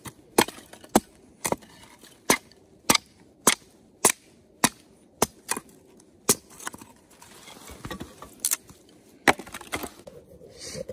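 Hatchet splitting dry wooden boards into kindling: sharp wooden chops about every half second, then a short pause before a few more strikes near the end.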